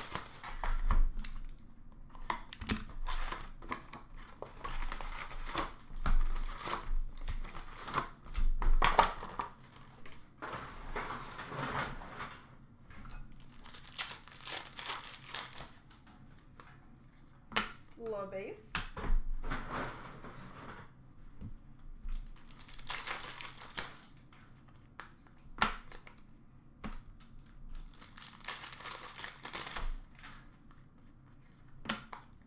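Hockey card pack wrappers being torn open and crinkled, with cards handled and shuffled: irregular rustling and crackling with sharp little clicks, coming and going in short spells.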